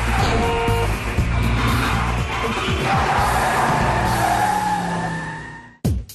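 Theme music with a strong bass line, mixed with car sound effects such as an engine and a tyre skid, fading out just before the end.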